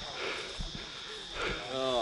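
Quiet outdoor background with a steady thin high tone and a few faint knocks, then a short burst of a man's voice near the end.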